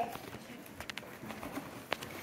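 Faint handling noise of a cardboard box, with a few light taps and one sharper click near the end.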